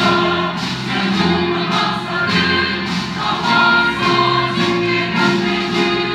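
Mixed church choir singing a Christmas anthem in Korean about the three wise men, with held chords over instrumental accompaniment.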